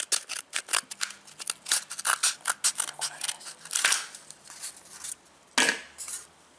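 Scissors snipping through a cardboard toilet-paper tube: a quick run of short cuts, about three or four a second.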